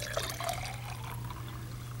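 Water pouring in a steady stream from a glass pitcher into a tall drinking glass.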